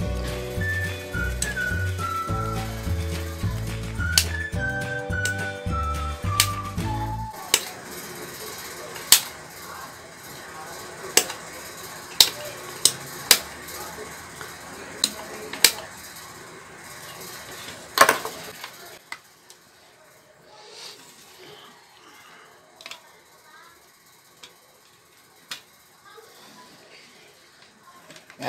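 Background music with a steady beat for about the first seven seconds, then a series of sharp clicks and light knocks from handling an automatic voltage regulator's case with a screwdriver. The clicks thin out to a few faint ones near the end.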